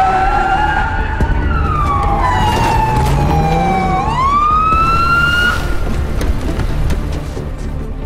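Emergency-vehicle siren on a fire chief's SUV wailing: one slow falling sweep, then a quick rise that cuts off about five and a half seconds in. A low vehicle rumble runs underneath.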